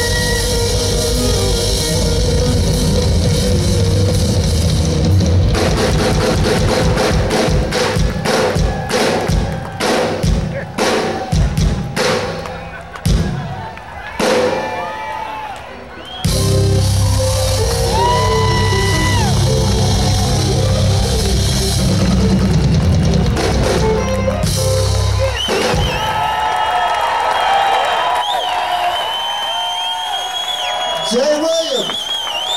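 Live jazz-funk band with alto saxophone, drum kit, electric bass and keyboards playing loudly. About five seconds in, the band breaks into a string of short ensemble hits and drum strokes separated by gaps. About sixteen seconds in, the full groove returns under long held saxophone notes, and near the end the bass and drums drop out, leaving saxophone and sustained high tones.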